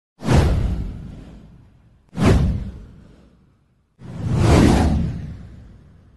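Three whoosh sound effects for an intro title animation, each a rush of noise that dies away over a second or more. The first two start abruptly, about two seconds apart. The third swells up before it fades.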